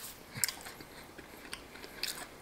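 A person chewing crispy fried chicken: a few faint, short crunches, the clearest about half a second in.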